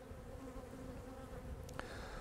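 Honeybees buzzing faintly, a steady low hum.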